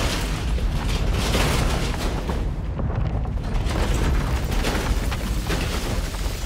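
Sound effect of a large building collapsing: a deep, continuous rumble with scattered crackles and crashes of falling debris.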